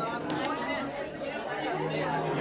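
Several people talking at once in a room: indistinct overlapping conversation and chatter.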